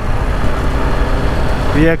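BMW G 310 R motorcycle's single-cylinder engine running steadily at city speed, under heavy wind rumble on the camera microphone.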